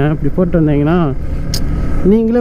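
Motorcycle riding noise: wind rush and the Yamaha R15's single-cylinder engine running as the bike rides along, under a man's voice for about the first second.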